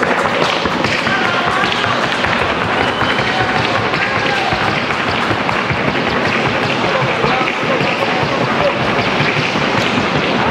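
Rapid, even hoofbeats of a Colombian paso filly in the trocha gait on a hard track, a fast, unbroken patter of hoof strikes.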